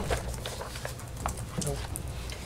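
Quiet meeting-room tone with a low hum and a few faint clicks, then a brief spoken 'Nope' near the end.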